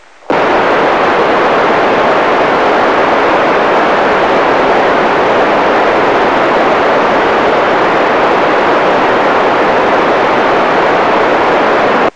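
FM radio receiver putting out loud, steady static hiss with the squelch open: no signal is coming through between the space station's transmissions. The hiss starts a moment in and cuts off sharply at the end as the signal returns.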